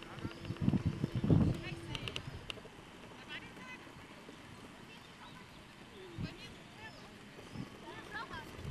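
Faint voices and shouts, with a cluster of loud low thuds in the first two seconds.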